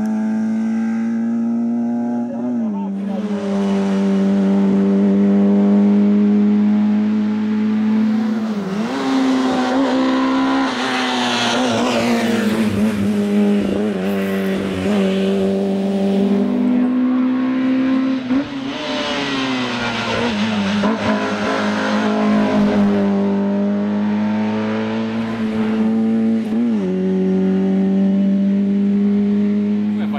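Peugeot 205 Rallye's four-cylinder engine run hard at high revs up a hillclimb, the note holding high and then dropping and climbing again at gear changes about four times.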